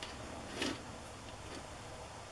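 Faint handling sounds of stamping tools on a craft mat: a light click at the start and a short scrape about half a second in.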